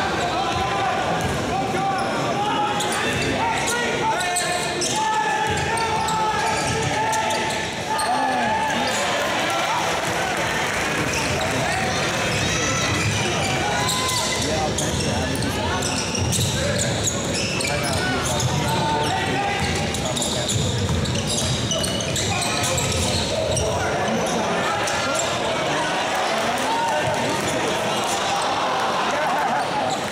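A basketball dribbled and bouncing on a hardwood court, with repeated short strikes, heard in a large gym over a steady wash of indistinct voices.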